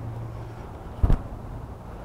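A single short thump about a second in, over a low, steady background rumble.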